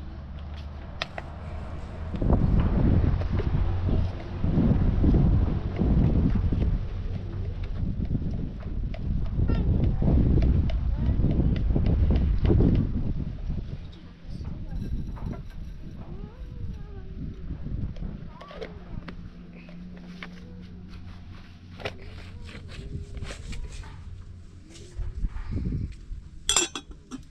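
A loud, low rumbling noise fills the first half. After it dies down, light metal clinks of a small steel teapot and its lid being handled come through, with faint calls in the background.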